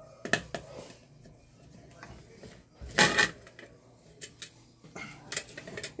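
Small metal clicks and knocks from handling a pressure cooker lid as its weight is set back onto the valve, with one louder knock about three seconds in.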